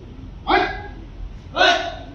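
Karate students shouting a kiai twice, about a second apart, with their techniques.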